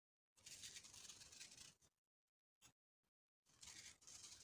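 Faint hiss of granulated sugar sprinkled from a spoon onto grated pumpkin, in two short spells: about a second and a half near the start, then again near the end.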